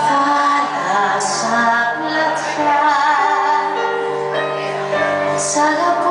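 A woman singing a Greek song live into a microphone, her voice wavering with vibrato over long held keyboard chords.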